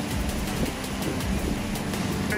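Wind buffeting the microphone over the rush of fast river water around a small boat, with quiet background music under it.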